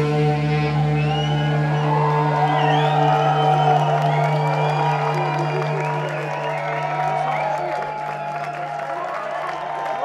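A live psychedelic rock band's sound cuts off at once, leaving a single low held note that rings on and slowly fades, while the audience cheers and whoops.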